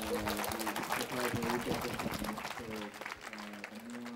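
Audience applauding, easing off over the last second or so.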